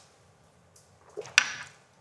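Mostly quiet, then about a second and a half in a single sharp knock of a small shot glass set down on a table.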